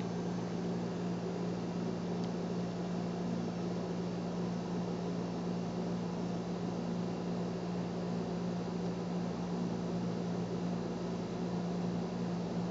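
Room background noise: a steady low hum under an even hiss, unchanging throughout.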